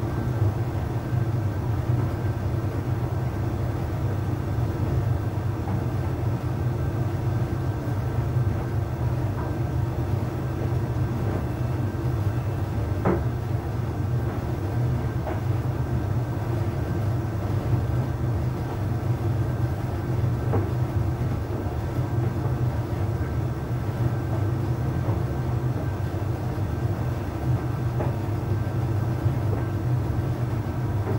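Arçelik 3886KT heat-pump tumble dryer running on a cottons eco cycle: a steady low hum from its inverter drum motor and heat-pump unit as the drum tumbles the load, with a few faint knocks.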